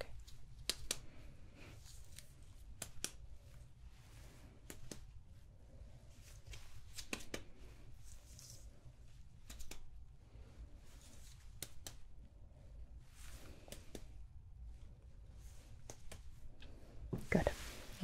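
Soft fingertip taps close to the microphone, coming irregularly every second or two, with light rustling between them: a doctor's percussion tapping on the torso.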